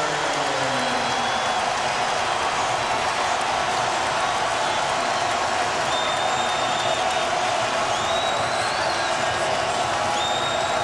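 Basketball arena crowd cheering steadily, with a few high whistles cutting through in the second half.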